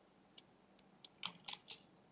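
Computer keyboard and mouse clicks: about seven short, irregular clicks, the loudest about halfway through.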